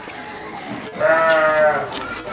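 A goat bleats once, a single drawn-out call of just under a second starting about a second in, its pitch sagging slightly at the end.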